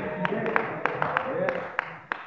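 Sharp hand claps at a steady pace of about three a second, over voices.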